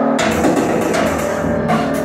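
A live rock band playing: drums with crashing cymbals and electric guitar come in together just after the start over a held, sustained chord.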